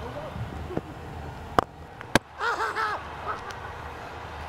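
Sharp crack of a cricket bat striking the ball, then about half a second later a second sharp knock as the ball glances off the bowler's fingers onto the stumps. Voices shout briefly just after.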